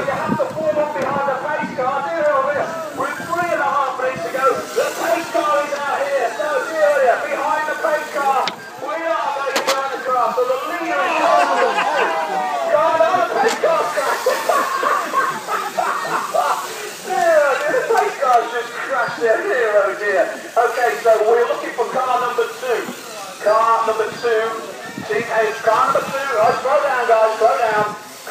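Speech almost throughout: voices talking, with no other sound standing out.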